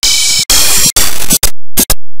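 Loud, harshly distorted noise with a music-like undertone from a 'G Major' audio effect, four pitch-shifted copies of a soundtrack layered together. It comes in chopped bursts that cut in and out about twice a second, getting shorter and quicker near the end.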